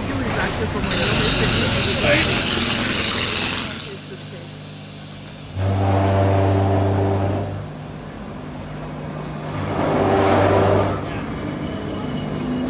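Lisbon Remodelado vintage tram running close by on street track. A hissing rush of noise comes in the first few seconds, then a low steady hum. Over the hum come two loud, low buzzing tones of about two seconds each, a few seconds apart.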